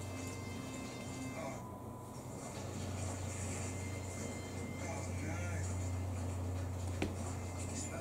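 A television playing in the room: faint speech and music over a steady low hum, with one sharp click about seven seconds in.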